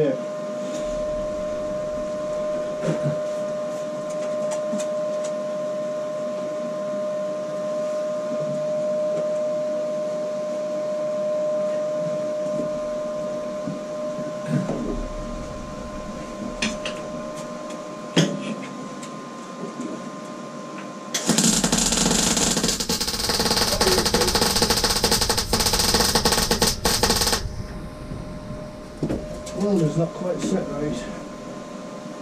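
Electric welding arc crackling on steel plate for about six seconds, starting about two-thirds of the way in; it is the loudest sound here. Before it, a steady hum runs through the first half, with a few short knocks.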